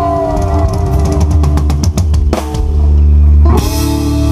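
Rock band playing live with electric guitar, bass and drum kit: a quick drum fill of rapid strikes runs into a heavy accented hit past halfway and a held chord. A second hit near the end brings a cymbal crash and a new sustained chord.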